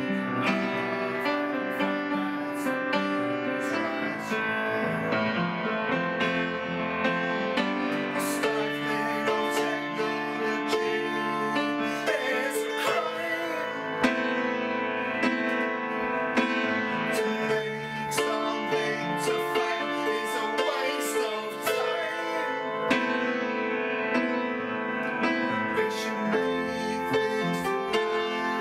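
Upright piano playing the accompaniment of a song, with a man singing the lyrics at times.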